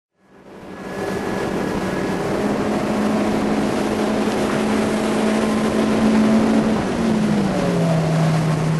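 Motorboat engine running steadily, fading in over the first second. Its pitch rises slightly a couple of seconds in and drops near the end as the engine slows.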